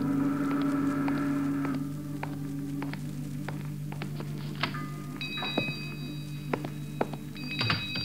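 An organ music bridge ends over the first couple of seconds. Then come sound-effect footsteps and a small bell ringing twice, the bell of a shop door as a customer comes in.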